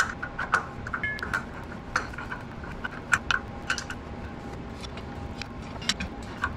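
Light metallic clicks and clinks from a hand wrench turning a threaded fitting into the engine. They come in uneven bunches: several in the first second and a half, more around two and three seconds in, and one just before the end.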